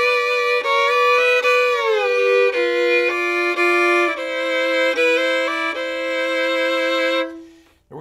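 A fiddle bowing a slow bluegrass double-stop lick: two notes sound together throughout, slurred from one pair to the next. A slide down comes about two seconds in, and the lick moves from G harmony to C. The notes stop shortly before the end.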